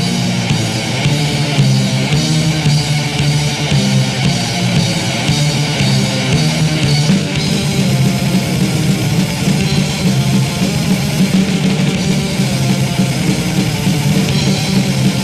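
Heavy metal band playing an instrumental passage on distorted electric guitars, with bass and drums and no vocals: a German thrash metal demo recording from 1986.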